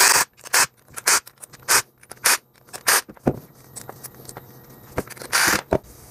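Cordless impact driver backing out small T20 Torx screws in short trigger bursts about every half second, then one longer burst near the end.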